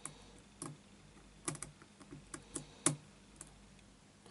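Faint, irregular small metal clicks of a lock pick probing the pin stacks of a six-pin Yale euro cylinder under light tension, a few clicks coming in quick bunches. The picker is going over the pins to check that they are all set.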